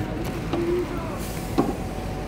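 Idling intercity bus engine, a low steady rumble, with a short hiss a little past halfway and a sharp knock just after it.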